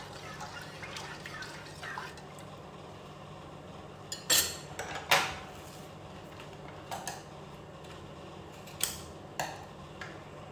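A metal spoon stirs liquid in a large stainless steel pot, then several sharp metal-on-metal clinks of spoon and pot come in the second half.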